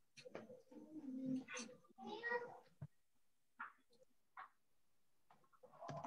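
Faint, indistinct voices over a video call: a few low murmured words for the first three seconds, then two brief short sounds and quiet.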